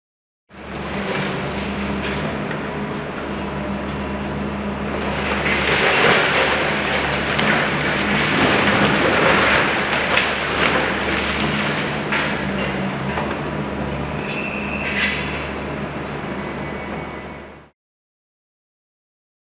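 Tracked demolition excavator's diesel engine running under load while its hydraulic crusher jaw bites into and breaks up a concrete building: a steady engine drone under the crunch and clatter of breaking concrete and falling rubble, loudest in the middle. Several sharp knocks and a brief high metallic squeal come near the end.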